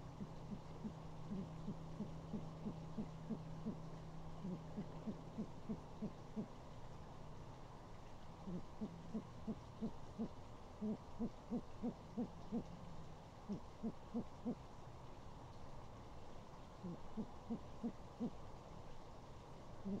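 Owl hooting: a long series of short, even hoots at about three a second, in runs broken by brief pauses. A faint steady low hum lies underneath through the first two-thirds and then fades out.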